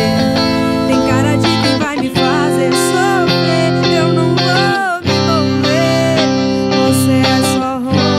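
Fender Stratocaster electric guitar playing a melodic lead line over a full sertanejo backing track, several notes sliding and bending in pitch, with a brief drop in the music about five seconds in.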